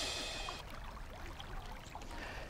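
Faint, even background hiss from an outdoor live microphone, with no distinct event, fading slightly over the first second.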